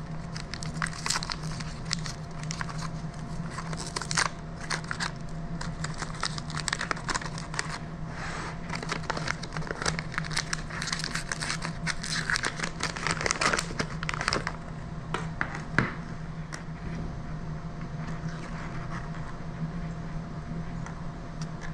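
Paper wrapper crinkling and tearing as it is worked off a tin of sardines, a busy run of irregular rustles and small clicks that thins out about two-thirds of the way in. One sharp click follows a couple of seconds later.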